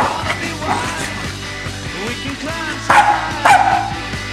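Corgis barking in play, three short sharp barks (one at the start and two close together about three seconds in), over rock music.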